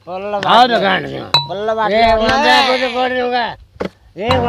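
A man's voice talking in long, drawn-out tones, with a single short clink of glass about a second and a half in.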